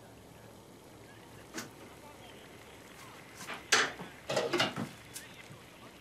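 Kitchen work at a counter: a few short knocks and clinks of dishes and utensils being handled, scattered through a quiet room, with the busiest stretch just past the middle.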